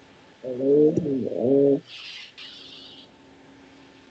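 A dove cooing: one low, wavering coo lasting just over a second, followed by a short hiss.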